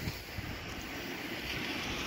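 Steady outdoor background noise, a low rumble and hiss with no distinct event, growing slightly louder near the end.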